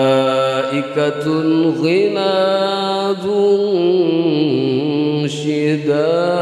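A young male qori reciting the Quran in a high voice into a microphone, in melodic tilawah style: long held notes ornamented with pitch turns and glides, with short breaks between phrases.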